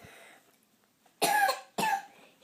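A child coughing twice in quick succession, a little over a second in, the second cough shorter than the first.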